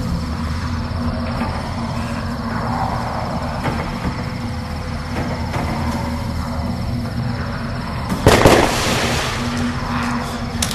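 Dark electronic track with a steady low droning bass and a thin high whine. About eight seconds in, a sudden loud noisy crash lasting about half a second hits, the loudest moment.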